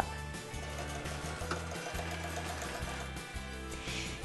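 Background music with steady low notes that change every half second or so.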